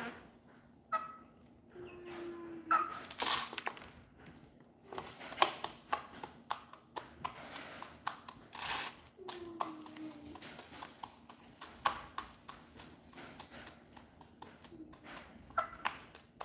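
H'mông chicken pecking feed from a plastic cup, its beak tapping the plastic in quick, irregular clicks. Between the clicks come a few short, soft calls from the hen, each falling in pitch.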